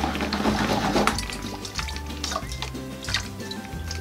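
Water gurgling as it drains through the joined necks of two plastic soda bottles in a tornado-in-a-bottle, loudest in the first second and then trickling with small splashes, over background music with a steady bass line.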